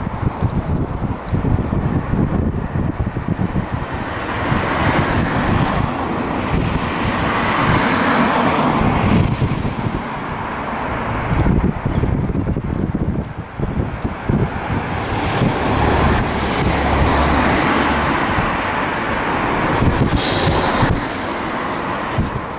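Outdoor noise: wind buffeting the microphone over a steady rush of road traffic that swells and fades.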